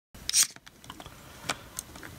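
Hard plastic parts of a small robot speaker being handled as a leg is worked off: a short scraping rustle about half a second in, then a few light clicks.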